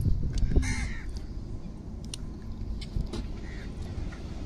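A crow cawing, one clear call just under a second in and a fainter one near the end, over a low wind rumble on the microphone.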